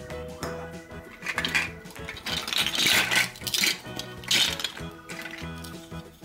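Hard plastic toy fruit and vegetable pieces clattering and knocking together as hands rummage through them in a woven basket, loudest in the middle few seconds. Cheerful background music plays underneath.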